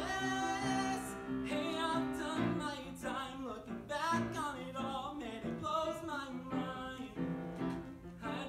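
A man singing a musical theater song with vibrato, accompanied by live piano.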